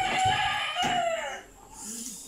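A rooster crowing: one long call, held level and then falling in pitch, ending about a second and a half in.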